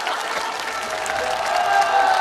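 Studio audience applauding steadily, with a few held musical tones coming in faintly about halfway through.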